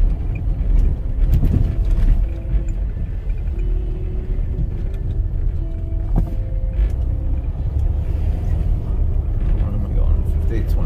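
Low, steady rumble of a car driving along a snow-packed residential street, heard from inside the cabin.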